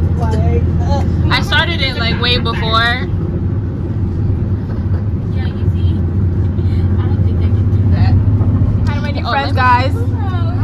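Bus engine and road noise heard inside the cabin, a steady low rumble. Voices talk over it from about a second in and again near the end.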